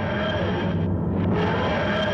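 A loud, dense, grinding sound effect with a low hum under it, part of the video's closing sting; it cuts off suddenly.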